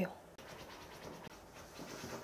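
Faint scratchy rustling of fingers rubbing and shaping a few strands of hair.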